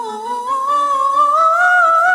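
Woman soprano soloist singing unaccompanied: one long, slowly rising note on the word "Above", with vibrato, growing louder about half a second in.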